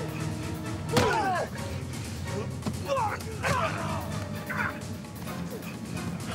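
A fist fight on the ground: a punch lands hard about a second in, and men grunt and cry out with effort and pain over a film score.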